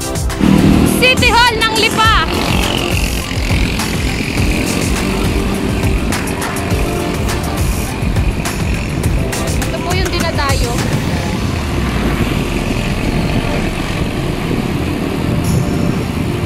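Steady wind and road noise on a bicycle-mounted camera riding along a busy street with motorcycle and tricycle traffic. It is broken twice by a brief wavering high-pitched sound, about a second in and again about ten seconds in.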